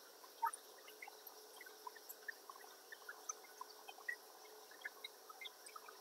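Near silence: faint room tone with a low steady hum and scattered tiny ticks, one slightly louder about half a second in.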